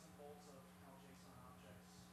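Faint, indistinct speech over a steady low hum.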